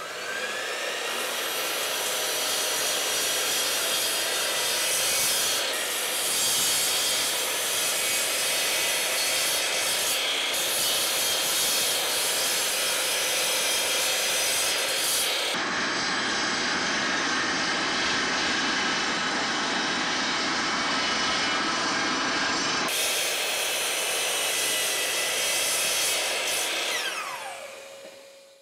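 Bosch GCM12SD 12-inch dual-bevel sliding miter saw making a series of cuts in wood, over the steady running of a shop vacuum connected to the saw's stock dust chute. The saw's motor whines up to speed just after the start and winds down near the end.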